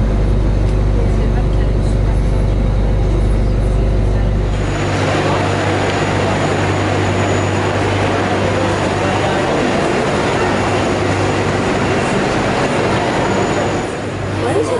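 Airport apron bus running, its engine a low rumble heard from inside the passenger cabin. About five seconds in this cuts off and gives way to the noisy bustle of passengers walking through a terminal hall, with chatter and a thin, steady high tone.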